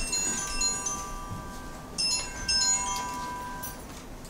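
Bright, chime-like metallic ringing: a cluster of clear high tones at the start and a second cluster about two seconds in, each fading away over a second or so.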